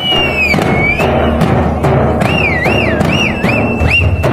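A group of dappu frame drums beaten with sticks in a steady, fast beat. A high, shrill tone swoops up and down over the drumming and is then held.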